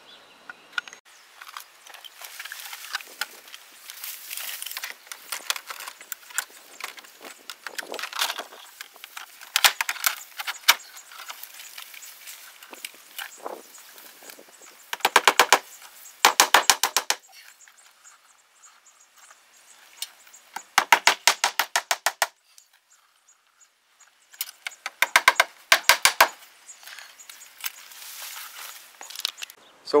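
Vinyl siding panel being handled and pressed into place, making about four short bursts of rapid clicking, with lighter scattered clicks and rustling in between.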